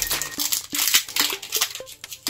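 Foil Pokémon booster pack crinkling and tearing as it is torn open by hand: a quick, irregular run of sharp crackles.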